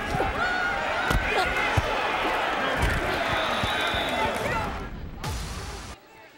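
Field audio from a football player's body microphone: several voices shouting and calling out on the field, with a few sharp thuds of players colliding. The sound cuts off sharply near the end.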